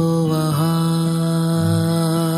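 Background Hindi devotional song to Radha and Krishna: a singer holds one long, steady note.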